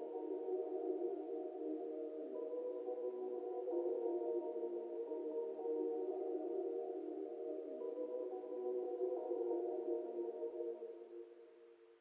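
The outro of a UK drill beat: soft, sustained melodic chords with the drums and bass gone. The chords shift about two seconds in and again near eight seconds, then fade out shortly before the end.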